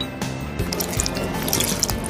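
Milk spat out and splattering and dripping onto plates of food, over background music.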